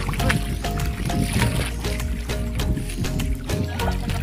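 Background music with a steady beat and held instrumental notes.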